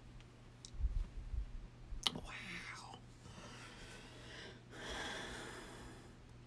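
A woman's faint whispered, breathy voice sounds close to the microphone, with a sharp click about two seconds in and a second breathy swell near the end. A steady low hum runs underneath.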